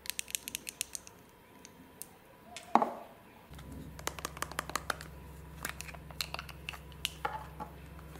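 Long acrylic fingernails tapping and clicking on plastic cosmetic packaging, first a lipstick case and then a squeeze tube of highlighter, in quick runs of sharp clicks. There is one louder knock about three seconds in, and a steady low hum comes in shortly after.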